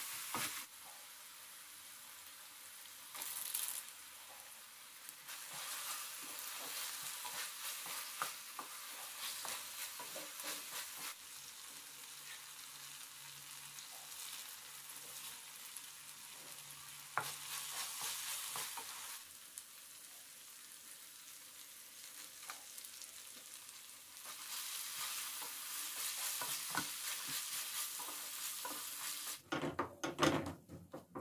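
Green peas, tomato and onion sizzling in oil in a nonstick frying pan while being stirred with a wooden spatula. The sizzle swells and fades in stretches, with light scrapes and taps of the spatula on the pan.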